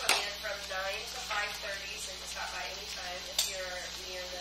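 Indistinct talking, too low or off-microphone for words to be made out, with two sharp clicks: one right at the start and one about three and a half seconds in.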